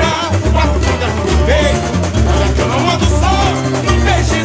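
Samba-enredo song: men singing over strummed cavaquinho and acoustic guitar, with a deep, steady bass beat.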